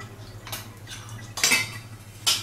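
Metal kitchenware clinking twice, a light knock about half a second in and a louder clatter past the middle, over a low steady hum.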